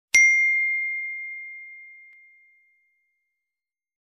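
Notification-bell sound effect: a single bright ding that dies away over about two seconds.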